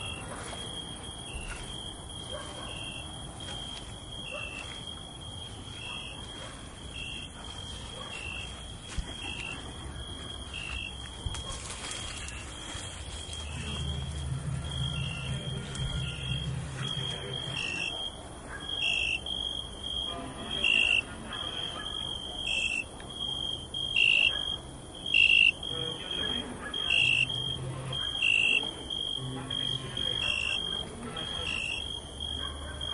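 Insect chirping, most likely a cricket: a steady high-pitched trill that pulses about once a second and grows louder in the second half. A low hum rises for a few seconds around the middle.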